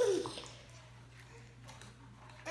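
A short laugh, then faint wet squishing of glitter-glue slime being stirred with a small spoon in a plastic cup as the activator takes.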